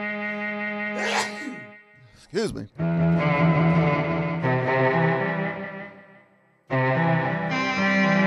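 Electric guitar played through an Electro-Harmonix Mel9 tape replay pedal and a Line 6 HX Stomp, giving sustained bowed-string-like notes. A held note fades out, a short pitch swoop follows, then a phrase of notes fades away, and a new phrase starts abruptly near the end. A brief breathy noise is heard about a second in.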